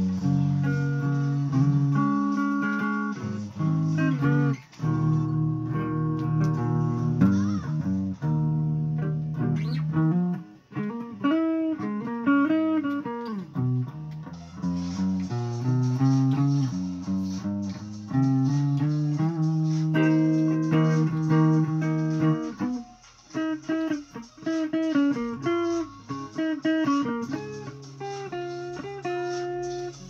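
Electric guitar playing single-note melody lines and held notes, several of them bent or wavering in pitch, with short breaks about ten seconds in and again near twenty-three seconds.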